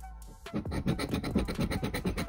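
A large coin scratching the coating off the prize spot of a scratch-off lottery ticket. There are rapid back-and-forth strokes, starting about half a second in.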